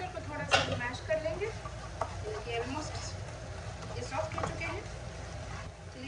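Talking voices with no clear words, over a steady low hum, with one sharp clink about half a second in.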